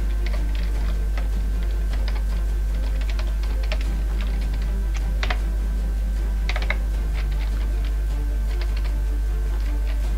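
Typing on a computer keyboard: a run of key clicks as a phrase is typed, with two louder keystrokes about five and six and a half seconds in. A steady low hum runs underneath.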